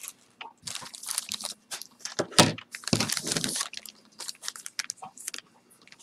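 Clear plastic zip-top bag crinkling and rustling as it is handled and pinched open, in irregular bursts.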